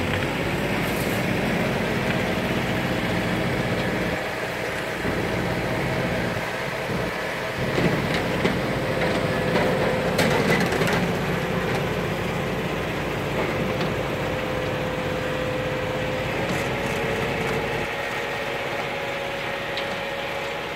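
Engine of a cable-ploughing rig running steadily under load as the plough draws plastic pipe into the ground, with a few sharp knocks and creaks about halfway through.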